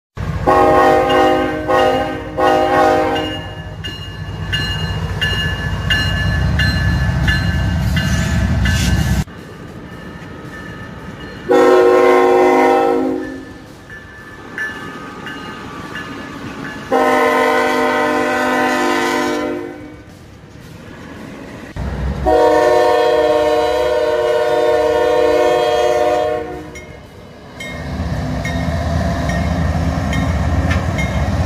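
Multi-note train horn sounding: a few short blasts at the start, then three longer blasts, the last one the longest. A low rumble of the train runs under the first part and comes back near the end.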